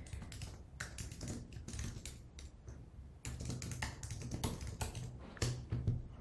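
Typing on a computer keyboard: irregular runs of quick key clicks, with a short lull about three seconds in, as an app name is entered at a terminal prompt and submitted.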